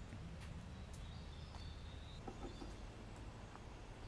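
Faint woodland ambience with a distant bird giving a few thin, high calls from about a second in, and a few light clicks.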